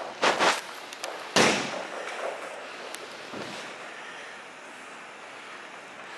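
A thrown ball bouncing on a rubber-matted floor in a large echoing hall: a couple of quick thuds just after the start, a loud one about a second and a half in that rings on, then a weaker bounce.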